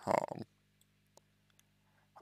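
A man's voice trails off at the start, then a pause with a few faint, sharp clicks over a low, steady hum.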